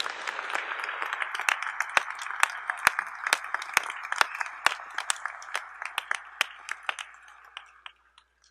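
An audience applauding, with a few nearby hands clapping sharply above the general clapping. The applause dies away near the end.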